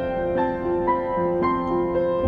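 Solo piano playing a slow, gentle song arrangement, with new notes and chords struck about every half second over held lower notes.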